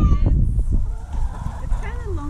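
Indistinct voices with no clear words, one at the very start and another near the end, over a steady low rumble.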